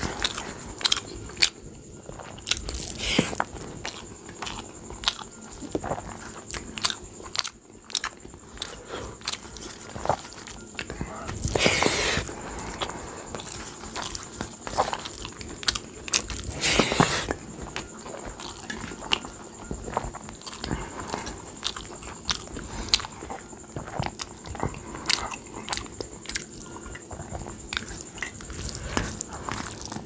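Close-up eating sounds of rice mixed with kadhi, eaten by hand: wet chewing and mouth clicks, with fingers squishing rice against a steel plate. There are two longer, louder bursts, about twelve and seventeen seconds in.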